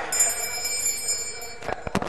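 A high-pitched electronic tone, several pitches sounding together, held steady for about a second and a half, followed by a couple of sharp clicks.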